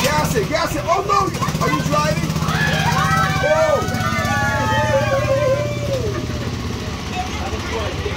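Small engine of an antique-replica ride car running steadily as the car pulls away, with children's voices over it.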